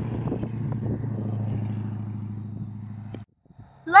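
An engine running steadily with a low, even hum, with light crackles over it; the sound cuts off abruptly a little after three seconds in.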